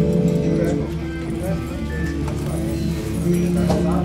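Electric guitar strummed by a beginner, each chord ringing on for a second or so before the next.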